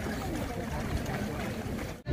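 Wind rumbling on the microphone over the patter of a large pack of marathon runners' footsteps and faint voices of runners and spectators.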